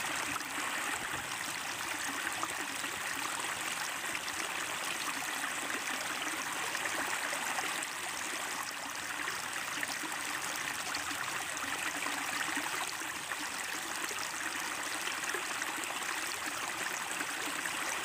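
A steady, even rushing noise, like running water, with no speech or tune in it.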